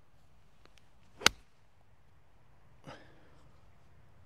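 A 52-degree golf wedge striking the ball on a softened approach shot: one sharp, loud click about a second in.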